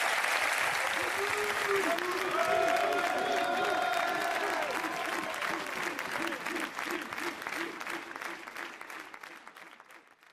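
Studio audience applauding, with voices over the clapping, gradually fading out toward the end.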